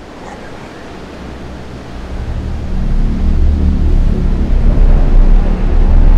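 A deep low rumbling drone swells in about two seconds in and builds to loud, over a steady surf-like hiss.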